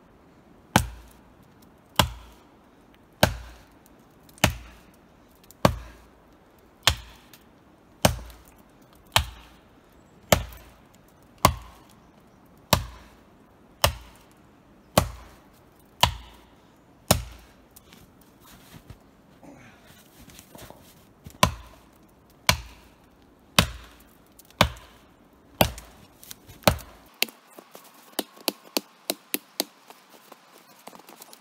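An axe chopping into the trunk of a small standing tree for firewood, one heavy blow a little more than every second. The blows pause for a few seconds midway, start again, and end in a quicker run of lighter knocks.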